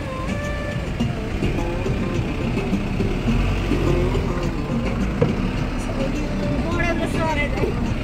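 Music with a singing voice, its held notes gently bending, over a loud, steady low rumble.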